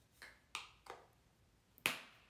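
A few short spritzes from a pump spray bottle of facial mist, followed by a sharper, louder click or knock near the end.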